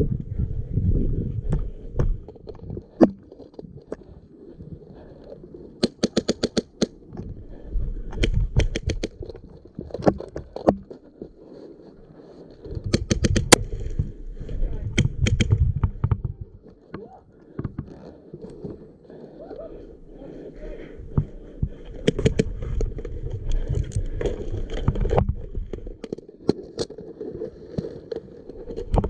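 HPA-powered airsoft rifle, a Krytac MK18 with a Wolverine engine, firing several short rapid bursts of shots, heard close up, with low rumbling between the bursts.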